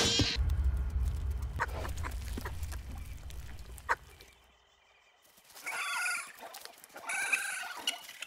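Two high-pitched, wavering calls from a small animated dinosaur, about a second apart in the second half. Before them a low rumble fades out over the first four seconds, with a couple of faint knocks.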